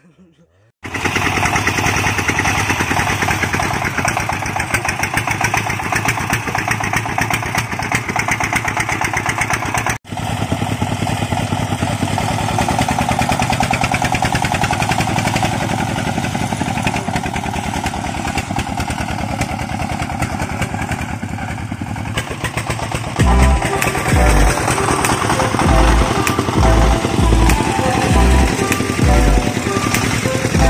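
A công nông farm truck's single-cylinder diesel engine running steadily, broken once by a short gap about ten seconds in. From about twenty-three seconds, music with a strong, regular bass beat plays over it.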